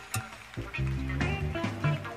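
Jazz big band playing: changing bass notes under held horn tones, with sharp cymbal and drum strokes throughout.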